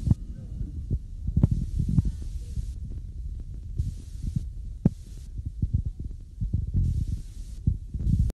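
Low, steady rumble on a phone microphone filming outdoors, with irregular dull thumps scattered through it.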